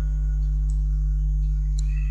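Steady low electrical hum, with a faint click near the end.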